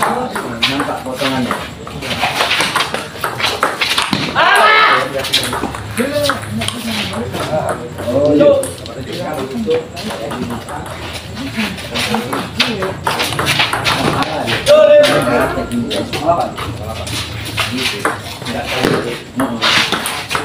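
Table tennis rallies: the ball clicking off the paddles and the table again and again, mixed with people's voices and calls.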